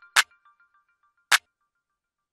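Two single hits of a trap clap sample played back in FL Studio, a little over a second apart. The tail of a preceding synth melody fades out under the first hit.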